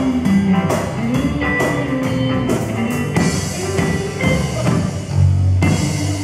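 A live band with electric guitars, bass guitar and drum kit playing an instrumental passage. Near the end the drum strokes stop and a chord is held.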